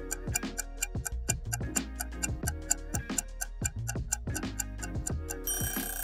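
A clock-ticking sound effect, about four to five quick ticks a second, over background music with a steady low note. A bright hiss comes in near the end.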